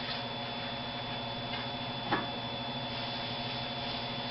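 Steady electrical hum of a quiet room, with one brief tap about two seconds in.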